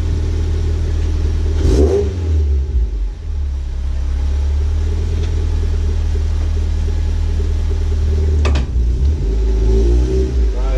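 Mazda MX-5 Mk3's four-cylinder engine idling steadily. About two seconds in there is a sharp knock and a brief swell in the engine sound, and a second sharp click comes near the end.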